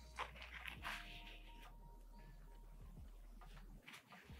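Faint rustle of a paper towel wiping a freshly tattooed arm clean, a few soft swipes in the first second and a half.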